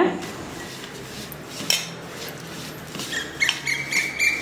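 Soft rustling and scraping of a hand rubbing butter into flour in a stainless steel bowl, with a few light knocks against the metal. Near the end a thin, steady high tone comes in.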